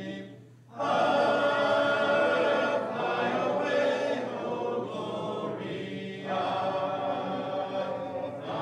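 A congregation singing a hymn together without instruments, the voices dropping out briefly about half a second in before the next phrase starts.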